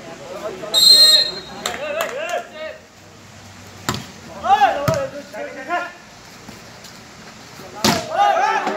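A short, high whistle blast about a second in, typical of a referee's whistle signalling the serve. Then voices call out, with sharp slaps of hands striking a volleyball about four seconds in, and the hardest hit just before the end.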